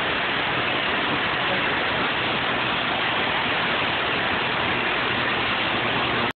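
Angle grinder with an abrasive cut-off disc cutting through steel rebar under load. It makes a steady, unbroken grinding noise.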